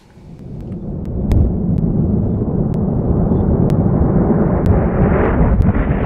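A deep, rumbling, thunder-like sound effect that swells up over the first second and then holds loud and steady.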